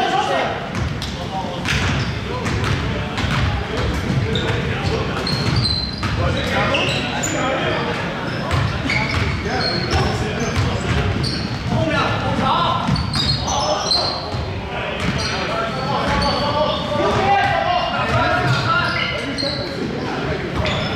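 Basketball being dribbled and bouncing on a hardwood gym floor, with short high sneaker squeaks and players calling out, all echoing in a large gymnasium.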